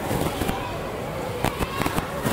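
Footballs being kicked on a training pitch: a few sharp thuds in the first half-second, then three or four more in quick succession near the end.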